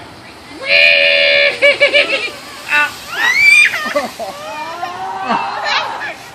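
Young children shrieking and squealing while riding down a slope on a man's back, on a sliding piece of cardboard: one long high cry about a second in, then a sharp rising squeal about halfway through, followed by excited gliding voices.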